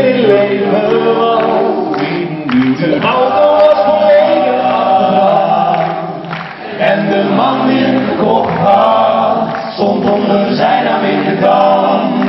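A cappella vocal group singing live in several-voice harmony, with no instruments.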